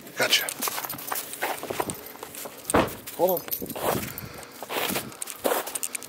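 Siberian husky jumping out of a car and setting off on a leash: a run of footsteps, rustles and jangling of harness and leash hardware, with a brief voice-like sound about three seconds in.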